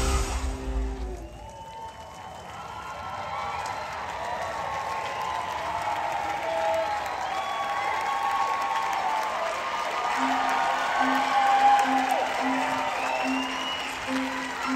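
A theatre audience applauding and cheering with whoops, building up just after a live rock song's band cuts off. Near the end a low note of music starts pulsing about twice a second under the applause.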